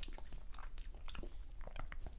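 Faint, irregular wet mouth clicks and lip smacks from someone tasting wine, a string of small clicks at uneven intervals.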